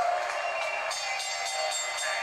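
A boxing ring announcer's long, drawn-out call of a fighter's name trails off at the start, followed by music.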